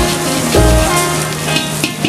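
Vegetables and noodles sizzling in a hot wok over a gas burner while a metal ladle stirs and tosses them, with background music over it.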